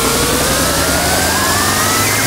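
Hardstyle dance track build-up: the beat drops out while a synth sweep rises slowly in pitch over a wash of white noise.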